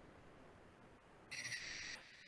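Near silence, then a short, steady high-pitched hiss starting about a second and a half in and lasting under a second.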